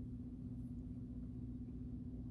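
Steady background hum: one constant buzzing tone over a low rumble, unchanging throughout.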